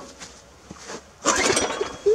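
Recoil pull-start cord yanked on a garden tiller's small gas engine: a single rasp of the rope about a second in, lasting about half a second. The engine does not start.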